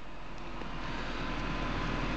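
Steady background noise with no distinct event: an even hiss over a low hum, swelling slightly toward the end.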